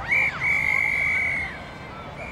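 Referee's whistle: a short chirp, then one long steady blast of about a second.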